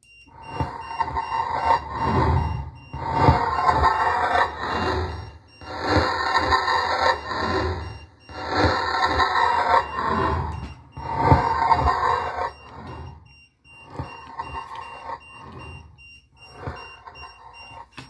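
A short snippet of recording played back on a loop from audio editing software, repeated about seven times with short gaps and the last two repeats quieter, sounding rough and ringing rather than like clear speech. It is the EVP snippet that the recordist hears as a female voice asking "Are you an American?"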